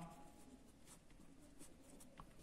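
Faint scratching of a felt-tip marker writing on paper, a few short strokes.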